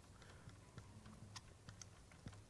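Near silence with faint, irregular taps and scratches of a marker writing on an easel board.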